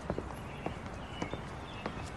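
Footsteps of shoes on stone paving at an unhurried walking pace, a sharp click just under twice a second, over a low steady background hum.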